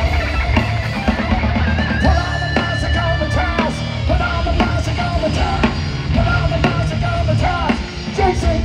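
A live heavy metal band playing loudly through a PA: electric guitar, keyboard and drum kit, with a bending melody line over a steady heavy low end and regular drum hits.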